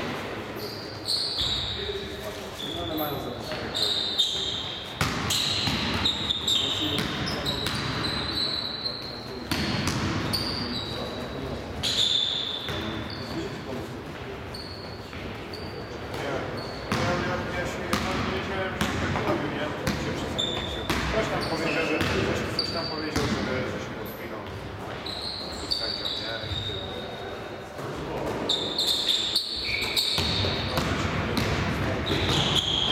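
Indoor basketball game: the ball bouncing on the wooden gym floor, sneakers squeaking in short high squeals, and players shouting, all echoing in the large hall.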